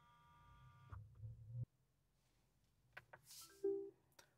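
Faint low hum of the BYD's motorised rotating infotainment screen turning from landscape to portrait, stopping abruptly about a second and a half in. A fading electronic tone comes before it, and there are a few soft clicks near the end.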